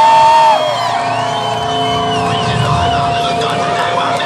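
Rock band's amplified electric guitar feedback sustaining steady drone tones through the PA. The higher of two held tones cuts off about half a second in while the lower one keeps ringing. A higher whistle-like tone slides up and wavers, over a faint crowd cheering.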